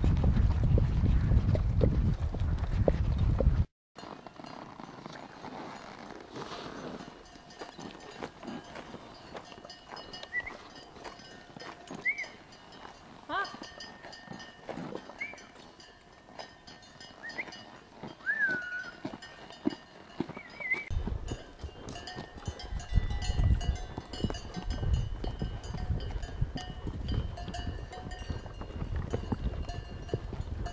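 A horse's hoofbeats on a trail with low rumble on the microphone as the rider moves along. In a quieter stretch in the middle, several short rising chirps sound, before the hoof thuds and rumble return near the end.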